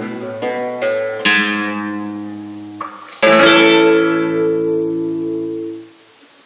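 Classical nylon-string guitar playing the closing chords of a piece: a few plucked chords, then a loud final chord about three seconds in that rings out and cuts off suddenly near the end.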